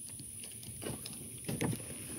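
Quiet outdoor background rumble with a few faint clicks and knocks, such as a phone being handled and moved around.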